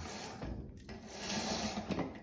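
Rubbing, scraping rustle of a fabric roller shade being handled close up, in two stretches with a slight dip a little before the middle.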